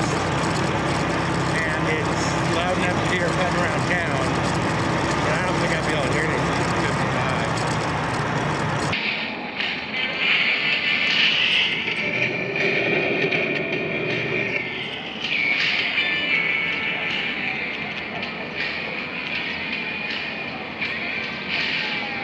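Motorcycle riding noise, the engine and rushing wind on the helmet, with music from a bone conduction helmet speaker at full volume mixed in. About nine seconds in the sound changes abruptly to a duller, muffled mix with the low rumble and top end cut away.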